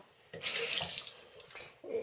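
Tap water running briefly into a sink basin, starting about a third of a second in, strongest for just under a second, then weaker.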